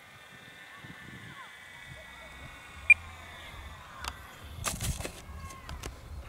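Faint high whine of the Durafly Goblin Racer's electric motor on low throttle as it comes in to land, sagging slightly in pitch. A short sharp beep comes about three seconds in, and a brief burst of noise near the end as the plane touches down in the grass.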